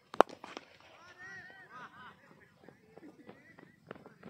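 A cricket bat strikes a leather ball with one sharp crack, followed by a few lighter clicks and players' voices shouting.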